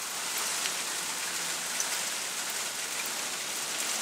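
Steady rain falling and splashing on wooden deck boards, an even hiss.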